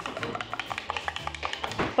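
A spoon stirring a drink in a cup, clinking against the side in rapid, irregular clicks, over background music.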